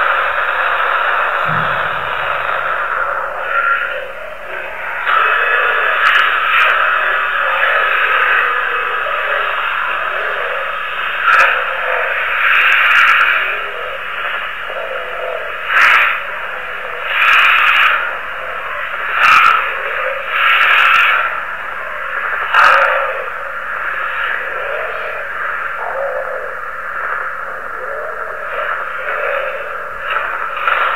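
Narrow-band, radio-like recording full of steady static hiss. From about 11 seconds in, a run of short louder bursts breaks through the hiss every second or two.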